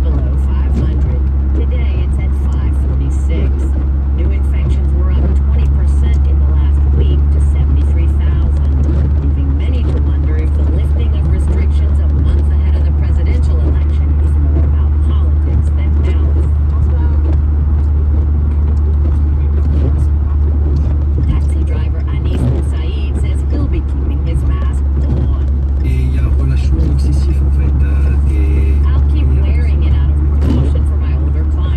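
Steady low drone of road and engine noise heard inside a moving car's cabin on a wet, slushy highway, with a hiss from the tyres on the wet road.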